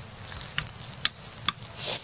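Food frying in a pan on the stove, a steady sizzle, with three light clicks of a utensil against the cookware.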